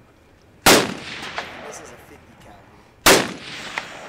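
Two single loud gunshots, about two and a half seconds apart, each followed by a long echo that dies away.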